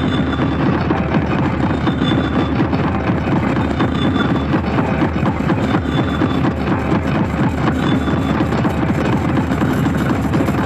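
Loud, distorted hard electronic music in an industrial hardcore style: a dense, grinding low wall of sound with rapid pulsing, and a short high blip about every two seconds.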